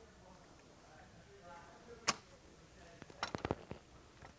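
Small metal clicks of a screw and hand screwdriver against the metal end cap of a vertical rod panic exit device: one sharp click about halfway through, then a quick cluster of clicks near the end as the screw is set in place.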